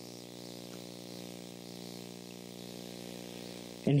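A steady background hum made of several even tones, with a faint hiss above it; a man's voice comes back in right at the end.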